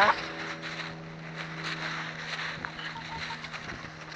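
A steady low hum, with light rustling and scattered faint ticks, and a few short soft peeps about three seconds in.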